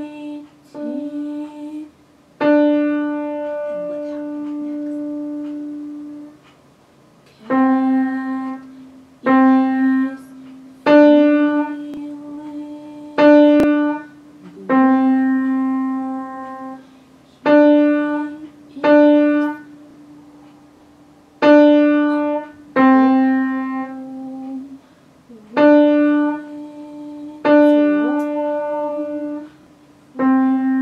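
Piano played slowly one note at a time, going back and forth between middle C and the D just above it. Each note is struck and left to ring out, with one long held note a couple of seconds in: a beginner's slow, sad two-note tune.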